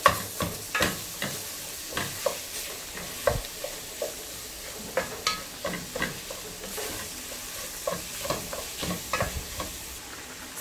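Wooden spatula stirring and scraping minced meat with onion and grated carrot in a stainless steel pot, with irregular knocks against the pot over a light frying sizzle. The stirring thins out near the end.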